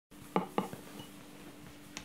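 Two sharp clinks of tableware in quick succession about a third and half a second in, then a lighter click near the end, over a steady low hum of room tone.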